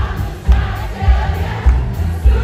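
Live band music played loud through a concert PA, with a heavy low beat a little under twice a second and voices singing over it.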